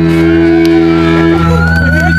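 A live band's amplified instruments ringing out on a steady held chord, which drops away about a second and a half in, leaving amp hum, a high wavering tone and crowd voices.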